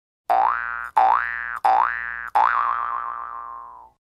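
A cartoon-style boing sound effect: four springy notes that each slide upward in pitch. The last note is held with a wobble and fades away.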